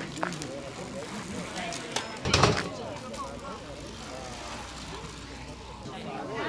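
Indistinct voices of people standing around outdoors, with a brief loud burst of noise about two seconds in.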